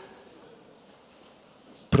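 A pause in a man's speech into a microphone: faint room noise only, until his voice comes back right at the end.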